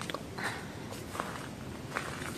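Footsteps of the person filming, a few soft steps on the ground under low outdoor background noise.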